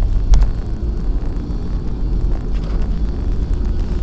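Steady low rumble of a car's engine and tyres on the road, heard from inside the cabin while driving, with a faint click shortly after the start.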